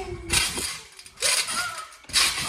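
A jumper lands on a trampoline and bounces again about a second later. Each impact gives a sudden hit on the bed, with the steel springs clinking.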